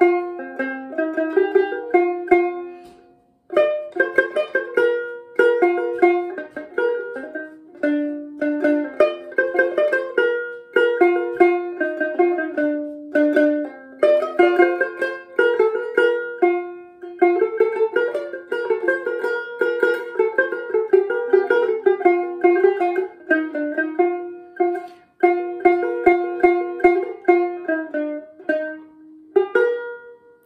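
Dramyin, the Himalayan long-necked plucked lute, played solo: a melody of quickly plucked single notes, pausing briefly twice.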